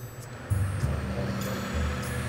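Background music with a tractor engine running underneath; the tractor is pulling a slurry tanker.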